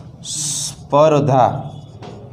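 A man's brief vocal sounds between sentences: a half-second hiss, then a short voiced syllable that slides up in pitch.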